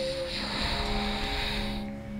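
Soft, steady rustling hiss of a person shifting their body on a yoga mat from kneeling to sitting cross-legged; it stops shortly before the end. Gentle sustained background music runs underneath.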